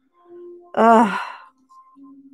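A woman's sigh about a second in: a short voiced tone that trails off into breath.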